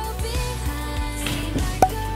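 Background pop music with a steady beat, with one brief sharp accent near the end.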